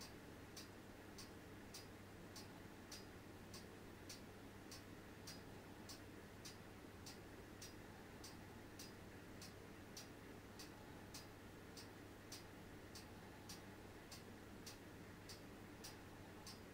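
Near silence: quiet room tone with a low steady hum and a faint, even ticking, a little under two ticks a second.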